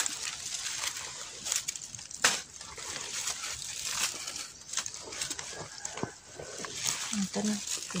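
Dry leaf litter rustling and crackling, with hands scratching and scraping in dry soil in an irregular run of small clicks. A brief spoken word comes near the end.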